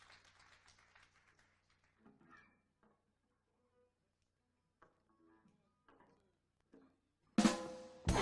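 Several quiet seconds of faint scattered taps and shuffles on stage, then near the end a jazz-fusion band comes in loudly all at once, drum kit and electric guitars starting the tune together.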